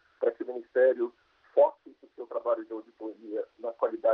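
Only speech: a man talking over a video-call link, his voice thin and narrow.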